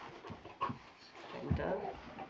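A puppy panting in short, irregular bursts at close range.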